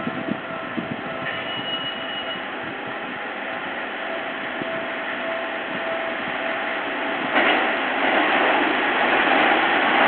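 A Seibu 6000 series electric commuter train approaching along the track. Its running noise grows steadily louder, with a sharp rise about seven seconds in as it draws near.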